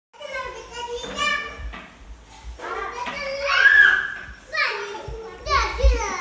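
Young children's voices shouting and squealing at play, with one loud high-pitched squeal about halfway through. Low thuds come near the end.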